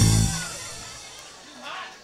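Drum kit hit, bass drum and cymbal together, right at the start; the cymbal rings out and fades over about a second and a half, closing a short drum sting. Faint crowd voices are heard near the end.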